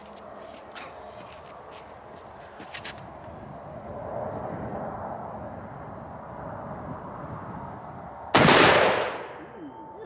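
A single shot from a Serbu .50 BMG rifle about eight seconds in: one loud, sharp crack followed by a ringing tail that fades over about a second. Before it there is only faint outdoor ambience with a few light clicks.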